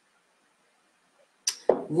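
Near silence in a pause of speech, then a short sharp hiss and a woman's voice starting near the end.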